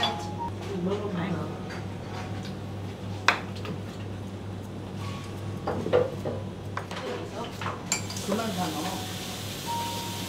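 Sushi-counter restaurant ambience: a steady low hum with faint voices and occasional clinks of dishes and utensils, one sharper click about three seconds in. A steady hiss starts about eight seconds in.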